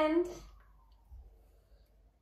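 Small speaker of a children's electronic sound book playing the end of a short pre-recorded voice clip, a held wavering note that fades out about half a second in. Faint clicks follow.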